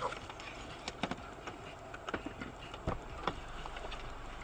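Inside a stationary car: a low steady hum with a few scattered, separate small clicks and knocks.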